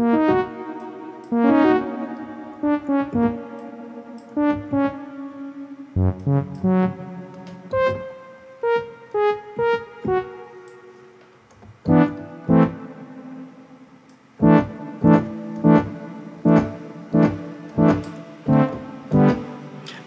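Synthesizer keyboard notes with an electric-piano-like tone, played through the Dedalus granular delay plugin and then Reason's The Echo delay, which smooths and warms the harsh digital repeats into a more comfortable sound. The notes come in uneven phrases, then in the last few seconds as evenly spaced strikes about two a second.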